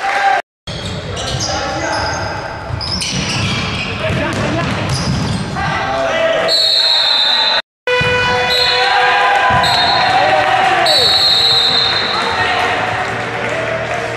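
Futsal being played in an echoing sports hall: ball strikes and footsteps on the wooden court, short high shoe squeaks, and players' shouted calls. The sound drops out completely twice, briefly, about half a second in and near the middle.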